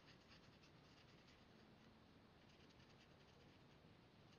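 Very faint scratching of a marker tip moving over cardstock in short, repeated strokes, barely above room tone.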